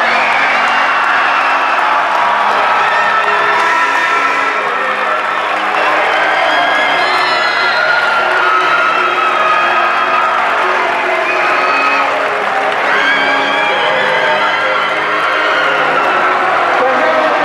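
Music playing loudly while a crowd cheers and applauds.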